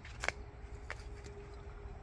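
Two light clicks, about a quarter second and about a second in, from footsteps or handling on a concrete garden path while walking. A faint steady hum begins just after the first click.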